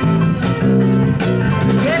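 Live jazz band playing a blues groove on electric guitars, bass guitar, drum kit and keyboard between sung lines, with drum strokes over the steady bass and chords. The singer comes back in right at the end.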